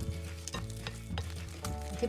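A ladle mashing and stirring soft steamed sweet potato in a glass bowl, with a few sharp scrapes and taps of the utensil against the glass, over soft background music.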